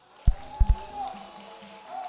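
Church keyboard holding a sustained note while the congregation claps in a steady patter, with three deep, loud thumps in the first second.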